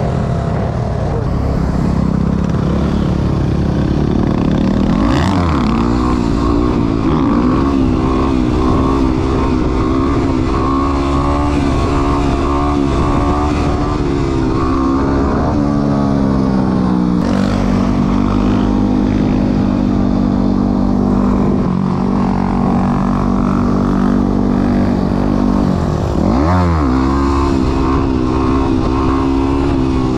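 Dirt bike engine running under way, heard from on the bike. Its pitch shifts with throttle and gear changes: it dips and rises about five seconds in, settles to a steady lower note in the middle, and dips and rises again near the end.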